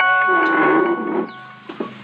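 A bell-like ringing tone: several steady notes sounding together, struck just before and fading out about a second and a half in, over a rough rustling underneath.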